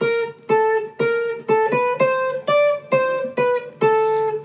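Clean-toned archtop electric guitar playing a single-note jazz blues line: a long scale melody of about a dozen plucked notes, placed on the off-beats.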